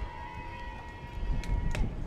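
Low, uneven outdoor rumble at a softball field, with a short sharp pop near the end as a pitched softball smacks into the catcher's mitt on a swing and miss.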